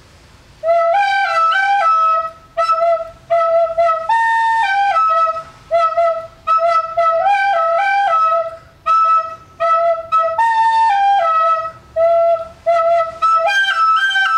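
A small plastic recorder playing a simple melody: a short phrase of a few notes, stepping up and back down, repeated over and over with brief breaks between, starting about a second in.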